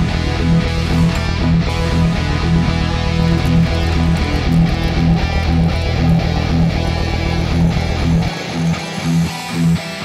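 Music: electric guitar played over a backing track with a steady beat. The deep bass drops out about eight seconds in.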